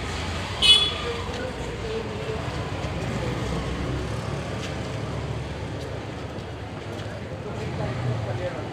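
Street traffic noise: a steady rumble of motor vehicles passing, with one short, high-pitched vehicle horn toot less than a second in.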